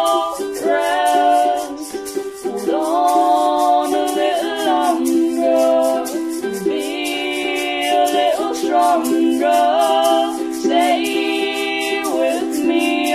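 Music: a singer holding long sung notes over a steady low accompaniment and a fast, even high ticking beat.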